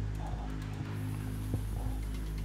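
Steady low electrical hum with faint background music, and a faint click about one and a half seconds in.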